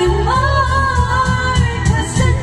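Karaoke singing into a handheld microphone over a pop backing track: a voice holding long, slightly wavering notes above a steady low beat.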